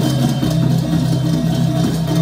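Balinese gamelan ensemble playing the dance accompaniment, its bronze metallophones and gongs sounding short repeated notes in a steady rhythm over sustained pitched tones.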